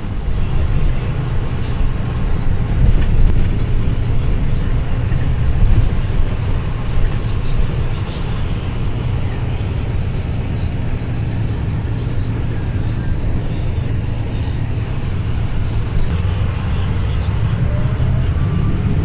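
Bus engine and road noise heard from inside the moving bus's cabin: a steady low rumble.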